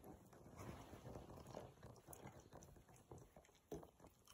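Faint sounds of two dogs play-biting: soft mouthing and fur rustling as one dog nibbles at the other's head and neck, with a sharper click near the end.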